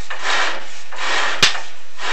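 Chimney inspection camera scraping and rubbing against the ridged inside wall of a flue liner as it is moved through, in swells of scraping noise, with one sharp knock about one and a half seconds in.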